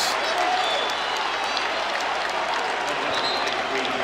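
Basketball arena crowd applauding, a steady wash of crowd noise.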